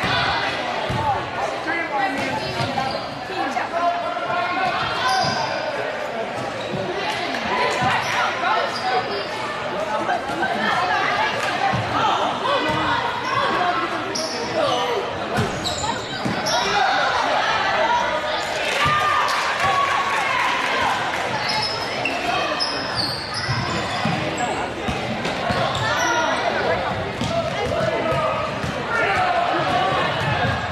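Live basketball game sound in a large gym: the ball bouncing on the hardwood floor, sneakers squeaking, and voices of players and spectators calling out throughout.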